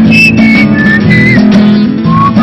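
A man whistling a melody into a microphone over his own strummed acoustic guitar chords. The whistled notes are held briefly and step downward, with a small slide up near the end.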